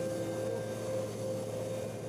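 Steady jet aircraft engine noise from an F-22 Raptor taxiing: an even hiss over a low, constant hum.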